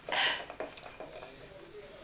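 Teaspoon stirring cocoa powder and milk in a ceramic mug, with faint light clinks and scrapes of the spoon against the mug. A brief breathy sound at the very start is the loudest thing.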